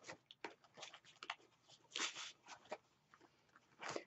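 Faint rustling and light taps of scrap paper and cardstock being sorted through by hand, with a slightly louder rustle about two seconds in.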